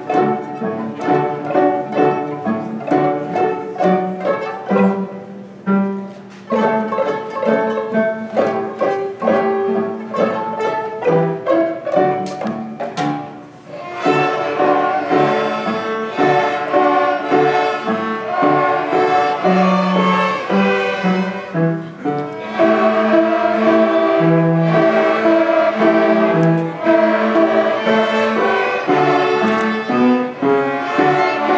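A student string ensemble of violins and cellos playing a piece together, with a brief break about six seconds in and a quieter passage around thirteen seconds in before the playing grows fuller and louder.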